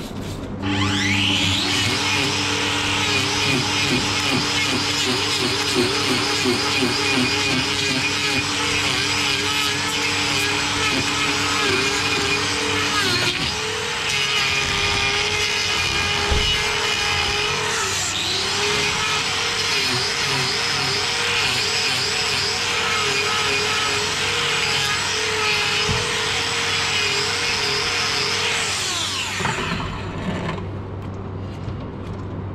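Angle grinder with a hoof-trimming disc spinning up, then grinding down the horn of an overgrown cow's claw, its pitch wavering as the disc bites under load. It winds down just before the end.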